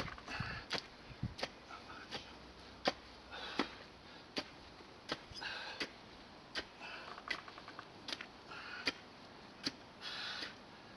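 A spade digging and scraping through loose garden soil in strokes every second or two, with sharp clicks between the strokes.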